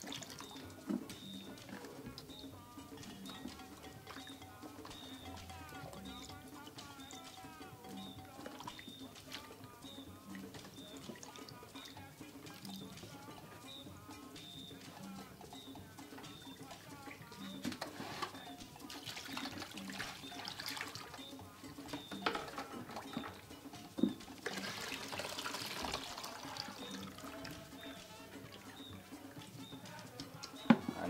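Background music with a steady beat, over water sloshing and dripping as tilapia pieces are rinsed and lifted by hand from a basin of water; the water and handling sounds grow louder in the second half, with a few short knocks.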